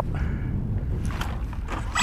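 Wind rumbling on the microphone, with a couple of faint clicks late on. The armed plane's electric motor is held at zero idle throttle and is not yet running.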